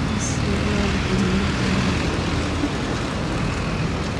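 Steady road traffic noise with a heavy low rumble.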